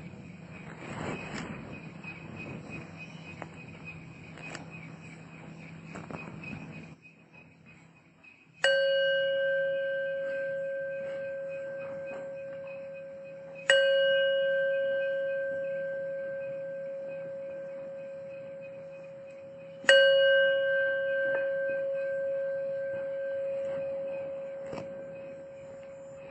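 A meditation bell struck three times, about five to six seconds apart, each strike ringing on with a clear tone and slowly fading. Before the first strike there is a low hum and a steady, fast insect chirping, which stops about seven seconds in.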